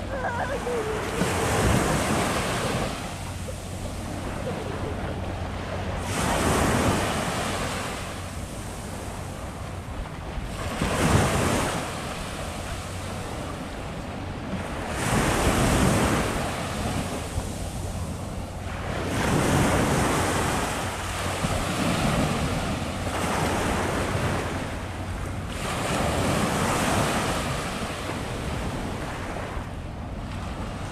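Small sea waves breaking and washing up onto a sandy beach at the water's edge, the surf swelling and ebbing every four seconds or so.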